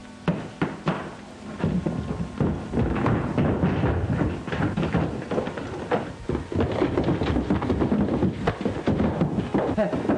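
Rapid, irregular knocks, thumps and clatter of objects and furniture being thrown about in a room, as a room is ransacked or a struggle goes on.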